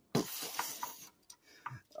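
A plastic Transformers Arcee figure being handled during transformation. A soft rustle in the first second is followed by a few small, faint plastic clicks as parts are moved and tabbed into place.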